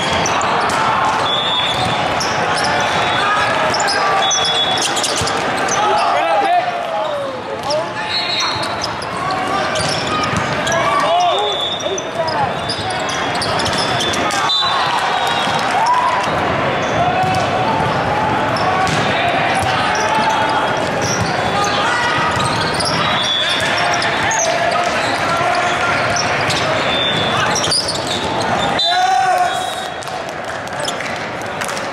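Volleyball being played in a large, reverberant sports hall: repeated hits of the ball and players' shouts over a constant crowd hubbub. Short high tones recur throughout.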